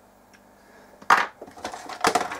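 A sudden clatter of small objects being dropped and knocked about, starting about a second in after near-quiet room tone, with a loud first crash followed by smaller knocks.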